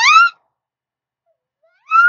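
A high-pitched playful vocal sound from a person, rising in pitch and ending soon after the start; then silence for about a second and a half before another high voice starts near the end.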